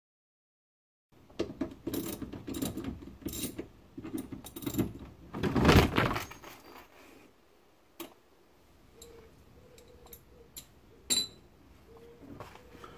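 Plastic engine undertray (splash guard) being worked loose under a car, with clicks and rattles of screws and tools. The loudest clatter comes about five and a half seconds in, as the undertray drops down unexpectedly. A few sharp clicks follow.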